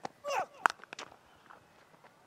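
A brief voice, then a single sharp crack of a cricket bat striking the ball about half a second in, followed by a few faint ticks over low stadium ambience.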